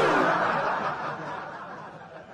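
Audience laughter breaking out as a burst, then dying away over about two seconds.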